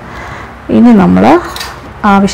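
A woman's voice speaking one short phrase about midway, with low background noise on either side of it.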